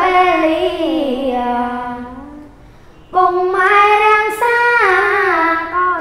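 Khmer smot, Buddhist chanted verse, sung unaccompanied by a boy novice monk: a long ornamented phrase that slides down in pitch and fades out, a short pause for breath about halfway, then a new phrase starting loudly with wavering, drawn-out notes.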